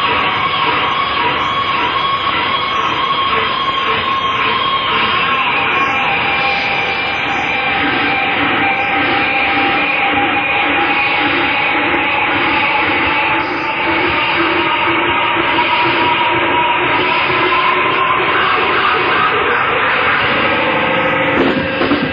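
Live rock band playing a sustained, drone-like passage: long held notes that waver and slowly glide in pitch over a dense wash of sound. A driving beat comes in near the end.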